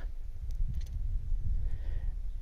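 A low, uneven background rumble with a couple of faint ticks about half a second in.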